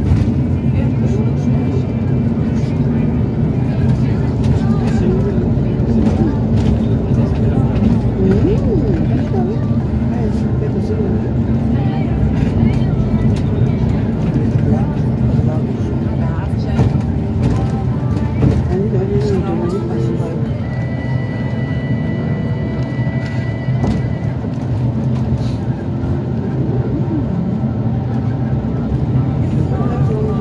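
Inside a moving bus, the engine and road noise drone steadily. About two-thirds of the way in, a steady high whine sounds for about three seconds.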